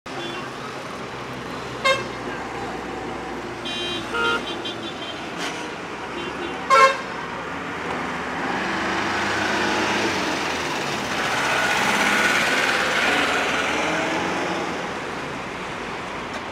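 Road traffic with vehicle horns honking: short toots about two seconds in and around four seconds, and the loudest near seven seconds. In the second half the noise of passing vehicles swells and then fades.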